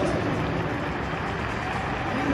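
Steady hubbub of a stadium crowd, an even wash of noise with no single event standing out.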